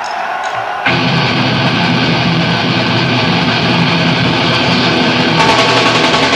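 A hardcore punk band launches into a song about a second in, playing loud, dense distorted guitars.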